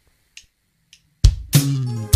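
Three sharp clicks, evenly about half a second apart, count in the song; about a second and a quarter in, the band comes in with a loud low hit and sustained chords with guitar and drums.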